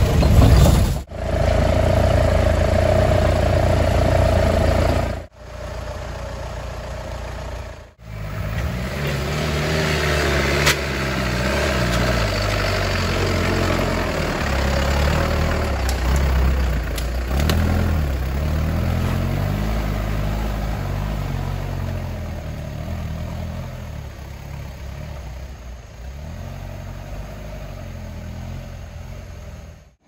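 Engine of a modified off-road 4x4 running and revving up and down as it works along the trail. The sound is broken by abrupt cuts in the first eight seconds, then rises and falls in pitch and fades gradually toward the end.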